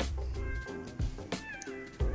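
Young puppies nursing, giving short high-pitched squeaks and whimpers, one sliding down in pitch about two-thirds of the way in, amid small clicks of suckling and shuffling.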